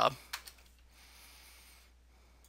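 A few faint keystrokes on a computer keyboard as a job number is typed in, followed by a low, even hiss.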